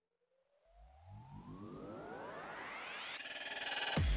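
Synthesized riser sound effect: a cluster of tones gliding steadily upward and growing louder, starting about a second in. Near the end it turns into a denser buzz.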